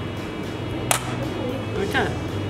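Background music with one sharp metallic click about a second in, from pliers bending a wire sinker clip back closed.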